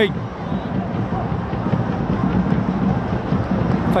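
Stadium crowd of football fans cheering steadily in the stands, celebrating a home goal.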